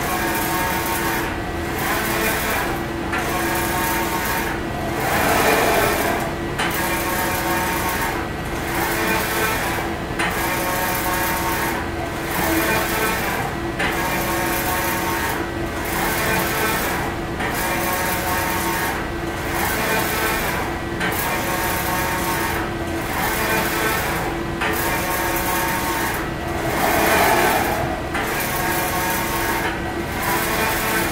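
Print-head carriage of an EXILE Spyder II direct-to-screen printer shuttling across the screen in unidirectional print mode: a motor whir that repeats in passes about every two seconds, each broken by a brief pause. Two passes, about five seconds in and near the end, are louder. A steady hum runs underneath.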